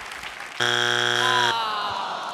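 Game-show wrong-answer buzzer: one harsh, steady buzz of just under a second that starts and cuts off abruptly, signalling that the answer is not on the board (a strike).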